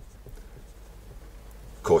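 Pen writing on paper: faint, irregular scratching as a short mathematical expression is written out by hand.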